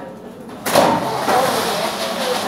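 Pull-down projector screen being pushed up and rolling back into its case. A sudden loud sliding noise starts a little over half a second in and carries on.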